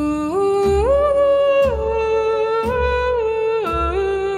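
A woman's voice singing a wordless, hummed melody in held notes that step up and then back down, over plucked harp accompaniment.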